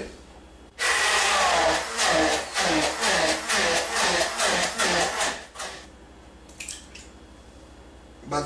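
Hand-held immersion blender switched on about a second in, its motor running loudly for about five seconds in a glass jug as it purées grated raw pumpkin, the note wavering as it works through the pumpkin, then switched off.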